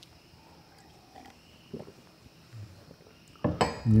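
A man drinking water from a glass: a few faint swallows and small glass sounds as he drinks and sets the glass down. Near the end he takes a breath and starts speaking.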